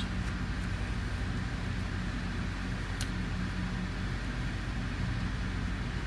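Steady low background hum, unchanging throughout, with a single faint click about halfway through.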